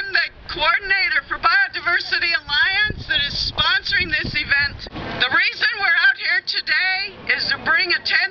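A woman speaking continuously through a handheld megaphone, her amplified voice thin and unclear.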